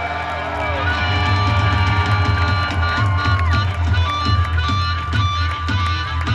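Live blues band playing an instrumental passage: amplified harmonica played through a cupped vocal mic, over electric guitar, bass and drums, with some cheering from the crowd.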